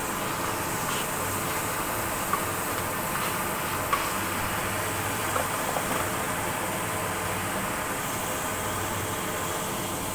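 Chopped meat and mushroom slices sizzling steadily in hot oil in a pan, with a few sharp clicks of the spatula against the pan.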